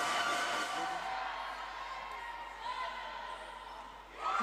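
Indoor sports-hall ambience during wheelchair basketball play: general crowd noise with indistinct voices, easing slightly toward the end.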